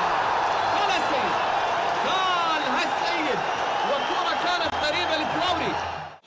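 Football stadium crowd noise: a dense roar of many voices, with individual shouts and calls rising and falling above it as an attack nears the goal.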